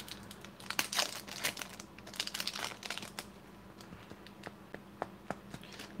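Foil-lined wrapper of a 1995-96 Fleer basketball card pack crinkling and tearing as it is pulled open by hand. A run of irregular sharp crackles thins out after about three seconds.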